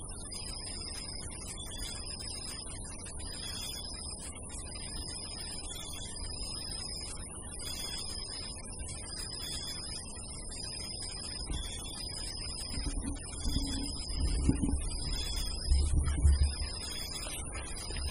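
Night insects chirping: a steady high-pitched whine with a shorter chirp repeating about once a second, over a low background rumble. Several dull low thumps come in the last few seconds.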